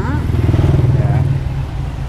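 A motorbike engine running close by, swelling to its loudest about half a second to a second in, then easing off.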